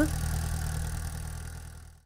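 An engine running steadily as a low hum in the background, fading out to silence near the end.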